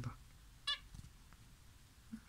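A zebra finch gives a single short, high chirp at the nest about two-thirds of a second in, over faint room tone.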